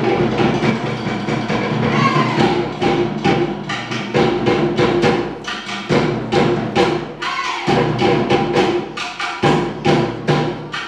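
Tahitian ʻōteʻa drumming: a fast, steady rhythm of sharp strikes on wooden slit drums (tō'ere), with deeper drums underneath.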